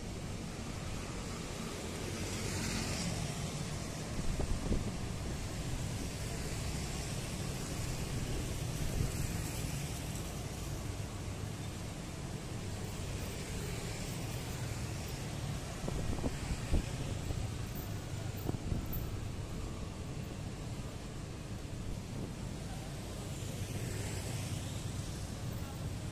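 Street traffic, mostly motorcycles and cars, passing on the road alongside: a steady hum with a few louder swells as vehicles go by, and some wind rumble on the microphone.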